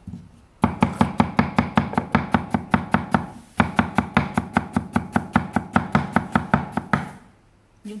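A kitchen knife chopping a white vegetable on a wooden chopping board in quick, even strokes, about seven a second. It comes in two runs with a short pause between them.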